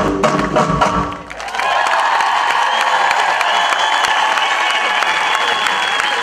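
A Tunisian percussion ensemble plays its last drum strokes, which stop about a second in. The audience then breaks into steady applause and cheering.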